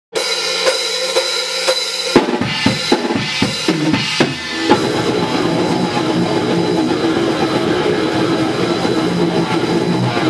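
Heavy metal band playing live: the intro opens on a held guitar note under steady cymbal ticks, about three a second. A run of heavy drum hits starts about two seconds in, and the full band, with drums and guitar, comes in together just before halfway.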